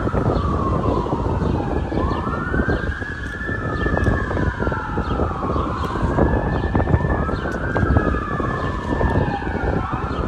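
Emergency vehicle siren sounding a slow wail, its pitch rising and falling smoothly, each sweep taking a few seconds, over a steady low rumble.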